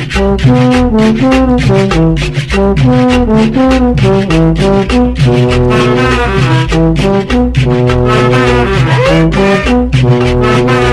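Salsa music played loud, with a brass section of trombones playing riffs over a fast, steady percussion beat and bass.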